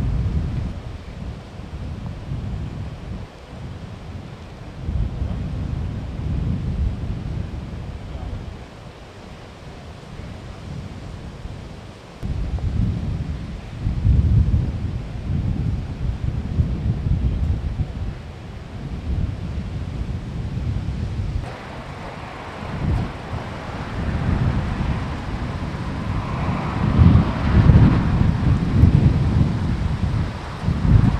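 Wind buffeting the camera microphone in irregular gusts of low rumble, with a broader hiss joining in about two-thirds of the way through.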